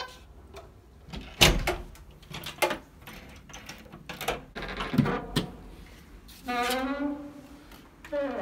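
A front door being unlocked and opened by hand: a series of sharp clicks and knocks from the peephole cover, lock and handle. A short voice is heard about six and a half seconds in.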